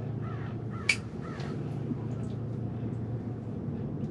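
A steady low hum, with a sharp click just before a second in and two short call-like sounds in the first second and a half.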